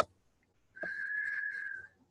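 A single steady high tone, whistle-like and unchanging in pitch, held for about a second and starting a little before the middle.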